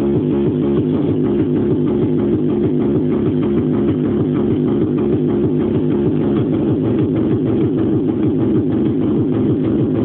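Hardcore techno pattern playing from a Yamaha RM1x sequencer at about 193 beats a minute, a fast, unbroken beat under a heavy repeating synth riff.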